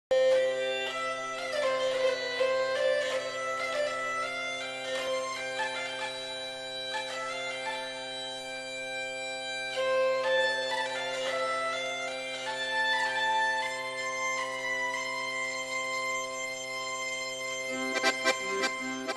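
Bagpipe music: a melody played over steady, unbroken drones.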